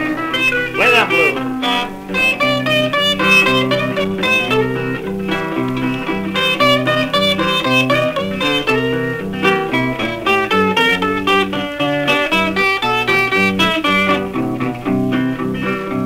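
Instrumental break in a 1964 rockabilly record: a guitar plays a lead solo of quick runs over a stepping bass line and rhythm backing.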